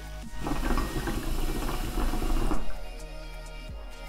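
Shisha pipe's water base bubbling as smoke is drawn through the hose, a steady gurgle lasting about two seconds that stops about two and a half seconds in, over background music.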